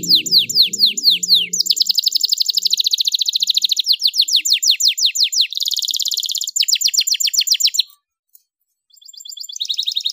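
Canary singing. First comes a run of quick downward-sweeping whistled notes, then fast rolling trills and a short buzzy phrase. The song breaks off for about a second near the end before one more trill.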